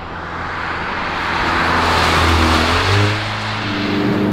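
Mercedes-AMG A45 S with its turbocharged 2.0-litre four-cylinder driving past. The engine and road noise swell to a peak about two seconds in, and the engine note drops as the car goes by.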